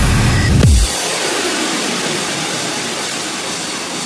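Electronic music transition effects: a deep falling bass swoop in the first second, then a steady hiss-like wash with no bass or beat.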